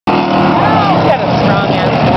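Engines of full-size trucks and cars running on a race track, a steady low engine drone, with people talking over it.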